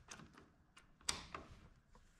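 Faint metal clicks and light scrapes as a hydraulic quick-coupler fitting on a pressure-gauge hose is pushed onto a tractor loader valve's port, with the sharpest click about a second in.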